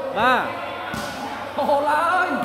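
A man's voice calls out once with a pitch that rises and falls, and about a second in a volleyball thuds once on the court; talking resumes near the end.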